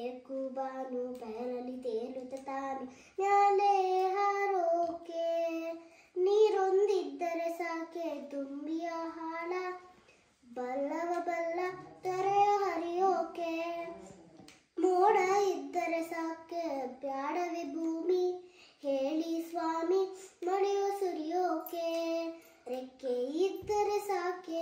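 A young child singing a melody unaccompanied, in phrases of a few seconds each with short breaks between them.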